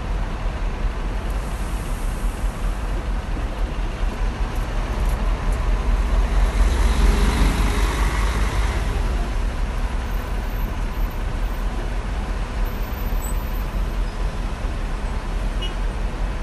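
Coach bus engine running at idle, a steady low rumble with traffic noise around it. About halfway through, a louder rush of noise swells and fades over a few seconds.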